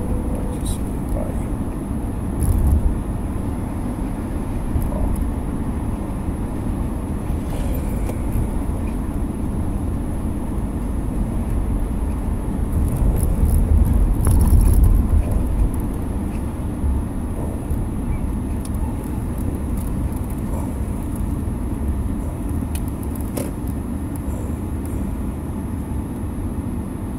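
Steady low road and engine rumble inside a car's cabin as it drives, swelling louder for a couple of seconds about halfway through.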